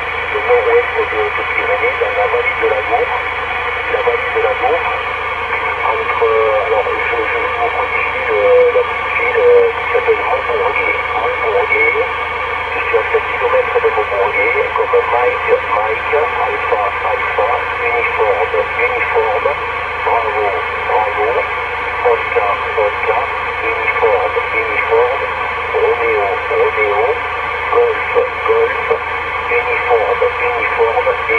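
A CB transceiver's speaker carrying a distant station's voice on upper sideband, narrow and thin, with steady band hiss underneath throughout.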